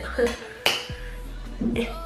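A short laugh, then a single sharp click about two thirds of a second in, with music playing faintly underneath.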